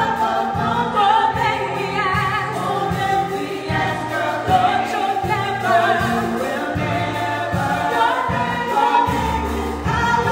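A small group of singers performing a gospel song in harmony on microphones, backed by a band with a steady low bass line.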